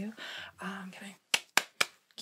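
Three sharp taps in quick succession in the second half, about four a second, made to test whether the numbed spot can be felt.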